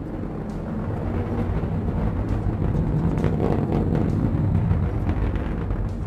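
Steady low rumble of missile rocket motors in flight, a sound effect, growing a little louder over the first couple of seconds.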